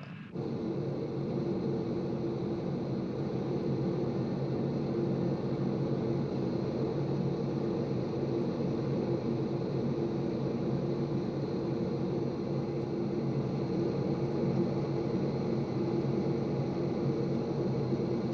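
Jet engines of a B-52 bomber heard from inside the aircraft: a steady, unchanging low drone.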